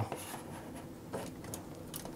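Faint handling sounds: hands moving a power cable and touching a computer case, with a couple of light taps.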